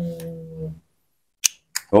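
A held, steady-pitched hum of a man's voice fades out, then two short sharp clicks of small metal engine parts being handled.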